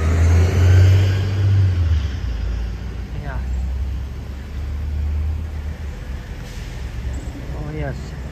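Street traffic rumbling past, mixed with wind buffeting the microphone; the low rumble swells in the first two seconds and again around five seconds in.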